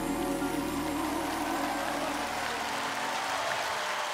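Live band's final sustained chord, keyboards and drum cymbals, dying away at the end of a ballad, with an even wash of crowd applause coming through underneath as the music fades.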